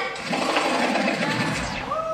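A transition in a dance-routine music mix: the song drops out and a motor-like rumbling sound effect runs under a falling sweep, with a deep boom shortly before the next part of the music comes in.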